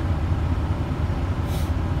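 Semi truck's diesel engine running steadily at low revs, a deep even rumble heard from inside the cab.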